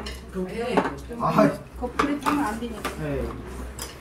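Chopsticks and utensils clinking and tapping against bowls, plates and the stew pot as people eat at a table, in a string of short irregular clicks, with low voices in between.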